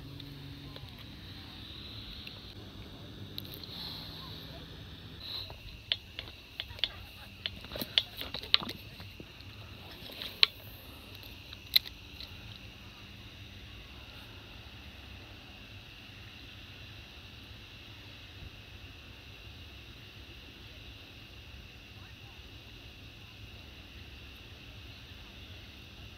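An angler moving over bank rocks and handling rod and reel: a string of sharp clicks and knocks about six to twelve seconds in, then a faint, steady high-pitched hum.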